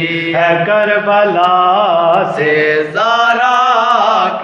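Two men chanting a noha, an Urdu Shia lament, in drawn-out sung phrases with long held notes.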